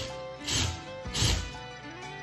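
Country-bluegrass background music, over which a cordless drill gives two short bursts, about half a second and a second and a quarter in, driving screws into a faux-stone wall panel.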